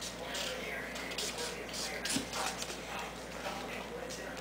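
Felt-tip marker scribbling on a paper coloring book: faint, irregular scratchy strokes.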